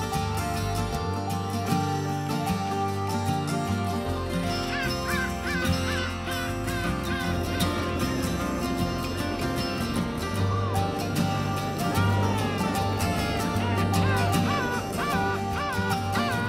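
Background music: a folk-style instrumental with sustained low notes, joined about four seconds in by a warbling, repeating high melody line.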